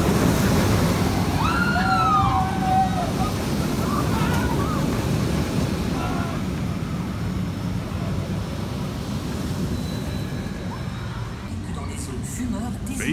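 Steel roller coaster train rumbling along its track overhead, loudest in the first few seconds and slowly fading as it moves away, with riders' screams about two seconds in.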